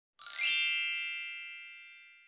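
A bright, shimmering chime sound effect: a cluster of high ringing tones strikes about a fifth of a second in and fades away slowly over the next second and a half.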